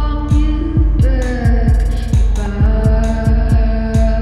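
Live darkwave electronic music from hardware synthesizers: a steady kick drum pulsing about three times a second under sustained synth tones and high ticking hi-hats.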